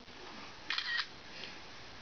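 Brief handling noise on the camcorder, a short clicking rustle about three-quarters of a second in, over a low steady room background.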